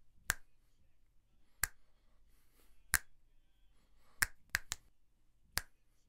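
Finger snaps picked up by a large-diaphragm condenser microphone: three single sharp snaps about a second and a half apart, then a quick run of three, then one more.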